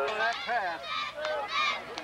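Several people shouting at once without clear words, overlapping calls that rise and fall in pitch.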